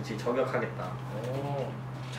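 A young man's voice says a short word, then makes a soft drawn-out vocal sound whose pitch rises and falls, like a low coo or hum.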